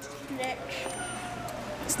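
Low background ambience of a large store with faint, indistinct voices and a steady hum.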